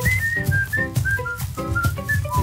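A whistled melody of short notes, about five a second, stepping mostly downward and lifting slightly near the end, over background music with a steady beat.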